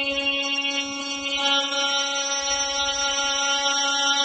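A man reciting the Quran in melodic tajwid style, holding one long vowel on a single steady pitch: a drawn-out madd.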